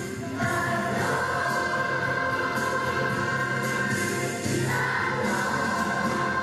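Children's choir singing long held notes, with a brief break and a fresh entry about half a second in and a change to a new chord about four and a half seconds in.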